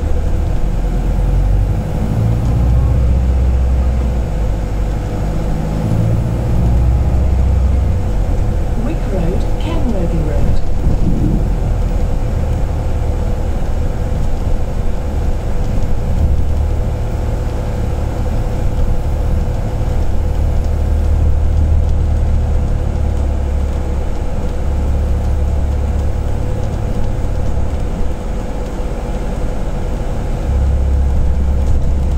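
Volvo B5LH hybrid double-decker bus on the move, heard from inside on the upper deck: a low rumble of drivetrain and road that swells and eases, under a steady hum. About ten seconds in there is a short squeal that glides up and down.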